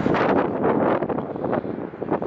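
Wind buffeting the camera microphone outdoors, a dense, uneven rumble that rises and falls through the two seconds.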